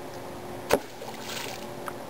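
A thrown rock hitting lake water: one sharp plunk a little before a second in, followed by a brief splash.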